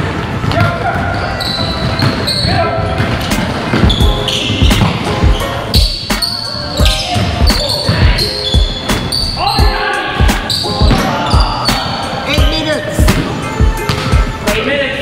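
A basketball dribbled and bouncing on a hardwood gym floor, with repeated sharp thumps, sneakers squeaking and players calling out in a reverberant gym during a pickup game.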